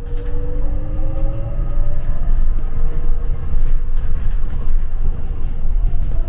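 Shuttle bus pulling away and accelerating: a heavy low rumble with a whine from the drive that rises in pitch over the first couple of seconds, then a fresh rising whine near the end.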